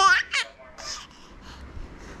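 A six-month-old baby laughing: a loud, high-pitched squealing laugh right at the start, followed by a few shorter, fainter breathy laughs.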